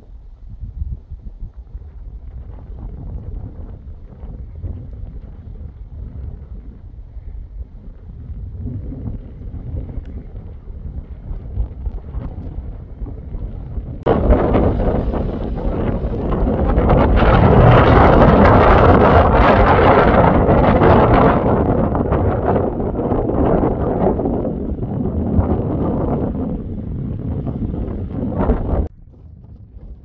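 Wind buffeting the microphone, a rumbling noise that grows much louder and fuller about halfway through, then stops abruptly near the end.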